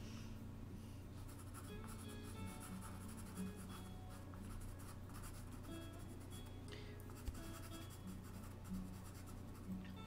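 Pastel pencil scratching lightly on Pastelmat board, under quiet background music of short, soft notes.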